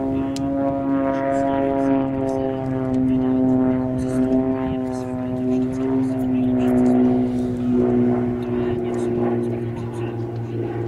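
Single-engine aerobatic airplane's piston engine and propeller droning steadily, its pitch drifting slowly down and shifting a little near the end as the aircraft manoeuvres.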